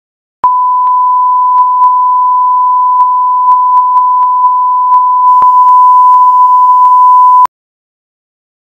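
A steady electronic test tone: one continuous beep at a single pitch, with faint clicks scattered through it. From about five seconds in it turns a little louder and harsher, and it cuts off abruptly about seven and a half seconds in.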